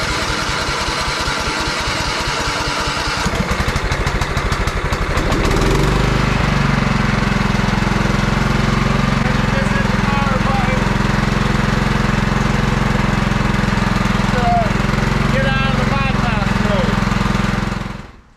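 A riding lawn tractor's small gasoline engine is cranked by its electric starter for about five seconds, powered straight from a lithium jump starter with no battery fitted. The engine then catches and runs steadily.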